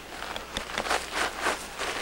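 Irregular scuffs and crunches of feet shifting on dry, gravelly ground, with a few sharp clicks about half a second in.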